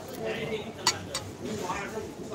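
Two light clinks of tableware about a quarter-second apart, near the middle, over faint voices.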